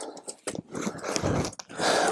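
Irregular crunching and small clicks from handling a trap with a caught beaver kit in icy shallow water at a beaver lodge.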